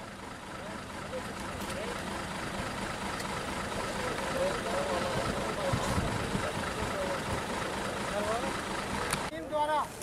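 Steady outdoor traffic noise from a queue of stopped trucks, buses and cars with engines idling, and faint voices of people standing among the vehicles.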